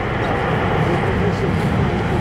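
Steady engine noise from a low-flying Antonov An-124 Ruslan's four D-18T turbofans as the aircraft approaches, growing slightly louder, with faint voices underneath.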